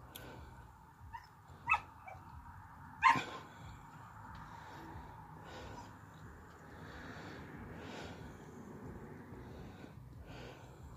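Husky giving a few short barks and yips between about one and three seconds in, the loudest at about three seconds.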